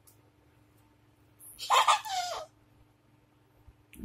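A toddler's single short, shrill squeal about a second and a half in, its pitch falling at the end.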